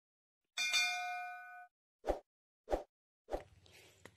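Bell-like notification chime from a YouTube subscribe-button animation, ringing for about a second and fading, followed by two short clicks. A short thump comes near the end.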